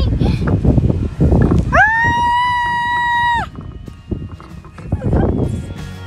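Children shouting and shrieking while playing on an inflatable bounce house, with one long, steady high scream held for about a second and a half, starting about two seconds in.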